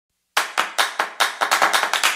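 Opening of an electronic intro jingle: after a brief silence, a run of sharp clap-like percussion hits that speed up from about four to nearly ten a second, building toward the music.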